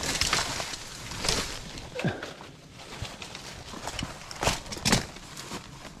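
Rustling and footsteps in dry leaf litter and brush while a climbing rope is handled around a tree trunk, with a few sharp clicks and snaps, the loudest two about a second before the end.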